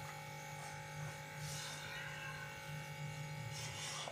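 Wooden spatula stirring a dry, powdery mix of roasted gram flour and coconut in a pan: soft scraping and rustling that swells a few times, over a steady low hum.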